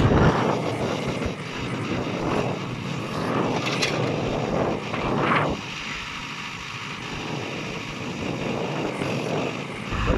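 Case 580 Super M backhoe loader's diesel engine running steadily as the backhoe arm is worked, with a brief swell in the engine and hydraulic sound about five seconds in.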